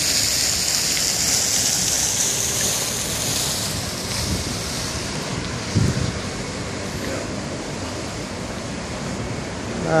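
Steady noise of road traffic at a busy roundabout, with wind rumbling on the microphone. A high hiss fades away about a third of the way in, and there is a brief low thump about six seconds in.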